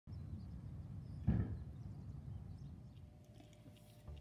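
Low outdoor rumble with a single short thump about a second in, fading toward the end.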